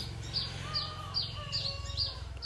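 A small bird chirping over and over: short, high, falling notes about three a second, over a faint low steady hum.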